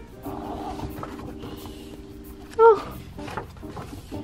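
Background music holding steady low notes, with a short, loud vocal sound with a bending pitch about two and a half seconds in. Faint paper rustling as the pages of a large printed instruction manual are turned.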